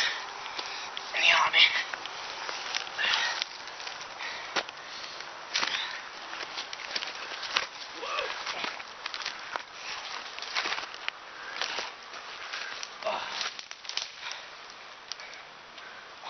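A person scrambling up a steep dirt bank through grass and brush: irregular rustling of vegetation, scuffing footsteps on loose soil and crackles of handling throughout, with a few short vocal sounds from the climber, the loudest about a second and a half in.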